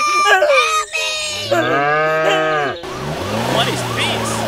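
Short high-pitched cries from a voice, then one long bleat from a farm animal, with a wailing siren starting near the end.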